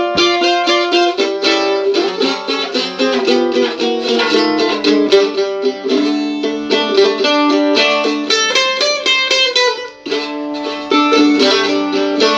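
Mandola played solo, a steady stream of quickly picked notes and chords with no voice over it, breaking off briefly about ten seconds in before resuming.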